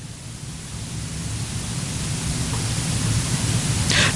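Steady hiss with a low hum beneath it, the background noise of the hall recording, growing gradually louder through the pause.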